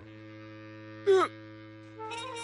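Background music holding a steady low note, with a man's short, falling exclamation "Ne?" ("What?") about a second in.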